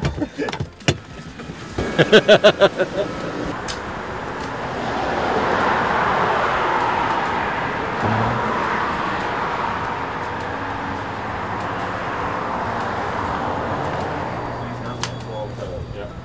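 Laughter, then a steady rushing noise that swells about four seconds in and slowly fades, like a vehicle or traffic.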